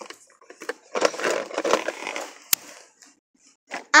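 Plastic toy car being handled, with irregular rustling and scraping for about a second and a half, then one sharp click.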